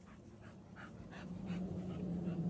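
American bully dog panting close by, short quick breaths about three a second. A low steady hum comes up underneath about halfway through.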